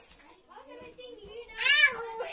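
A young child's voice, faint and wavering, then a loud, high-pitched squeal lasting under half a second near the end.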